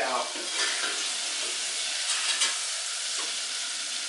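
Flour-dusted squid pieces deep-frying in a saucepan of hot vegetable oil: a steady sizzle as they are stirred and lifted out of the oil.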